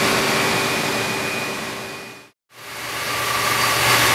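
Steady hum and hiss of swimming-pool plant-room machinery, pumps and pipework running, with a few steady tones in it. It fades out to a moment of silence a little past halfway and fades back in.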